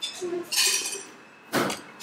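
Eating at the table: a short slurp-like hiss as a mouthful of noodles is taken from chopsticks, then a single clink of a utensil against a ceramic bowl about a second and a half in.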